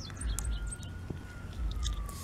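Birds chirping in short, high, descending calls over a faint distant siren whose single wail slowly rises and falls. Low wind rumble on the microphone comes and goes.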